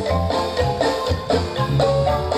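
Live band music for a dance, with marimba notes over a pulsing bass.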